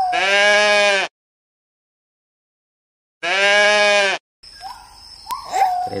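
A sheep bleating twice, each bleat about a second long and steady in pitch, with dead silence between them.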